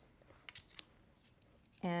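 A few light clicks about half a second in, as an X-Acto knife and ruler are picked up and laid down on a cutting mat.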